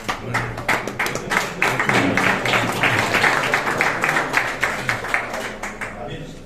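A small group of people applauding by hand, building up and then dying away near the end.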